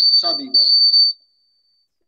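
A man speaking a few words, with a high, steady whistling tone sounding over his voice; the tone lingers faintly after he stops, a little over a second in.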